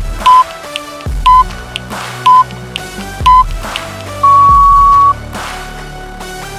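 Workout countdown timer beeping over background music: four short beeps one second apart count down the last seconds of rest, then a long, slightly higher beep signals the start of the next exercise.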